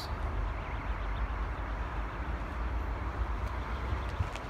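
Steady low outdoor rumble with an even hiss, with no distinct events: wind buffeting the phone's microphone.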